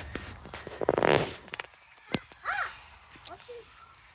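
Mulberry leaves and branches rustling close to the microphone, loudest in a short burst about a second in, followed by a few brief vocal sounds.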